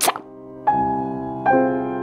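Slow, sparse piano music: a chord struck about two-thirds of a second in and another about a second and a half in, each left to ring and fade.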